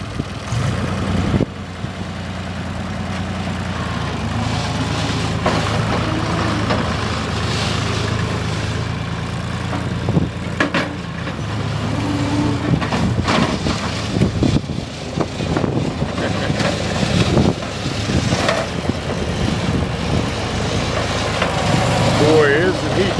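Skid-steer loader's engine running as the machine works, its note shifting a few times, with scattered clanks.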